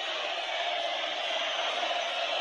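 A steady, even hiss with no speech or distinct events.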